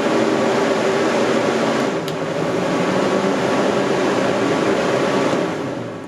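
AM4000 portable axial fan (a 4,000 CFM air mover) running with a steady blowing roar and hum. About two seconds in its rocker switch clicks, and the fan's pitch dips and climbs back up. Near the end the fan is switched off and winds down.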